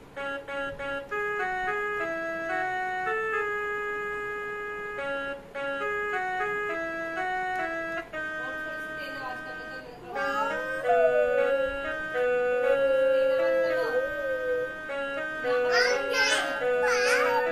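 Casio mini keyboard played one note at a time in a simple stepwise melody of held, steady tones. From about ten seconds in, a small child's voice joins in, vocalizing along in sliding pitches, with a louder high-pitched burst near the end.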